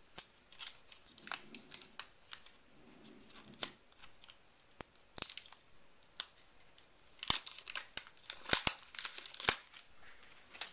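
A small white plastic iPhone dock handled in the hands, with crinkling of thin plastic and a scatter of sharp plastic clicks, busiest in the last few seconds.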